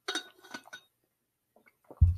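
A few quick, light clinks of glass in the first second, a glass being handled or set down.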